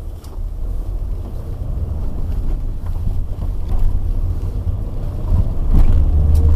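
Car engine and road noise heard from inside the cabin: a low rumble that dips at the start and then grows steadily louder as the car makes a turn and picks up speed.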